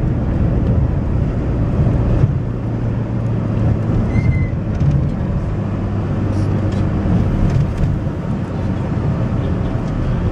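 Steady engine and road hum of a motor vehicle driving slowly, heard from inside it.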